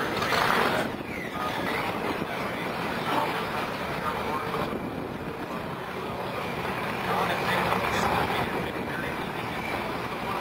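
Vehicle engine noise mixed with indistinct background voices, with louder swells about half a second in and again near the end.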